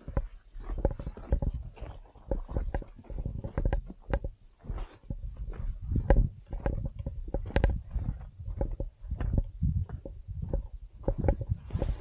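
A hiker's irregular footfalls and scuffs on a rocky, brush-covered mountain trail, mixed with bumps and rubbing on the handheld camera and gear: a steady string of dull knocks with no regular rhythm.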